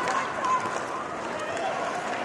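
Ice-hockey arena ambience during play: a crowd murmuring steadily, with faint clicks and scrapes of sticks and skates on the ice.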